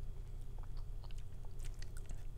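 Faint, scattered small mouth clicks and lip smacks from a man pondering, with no speech.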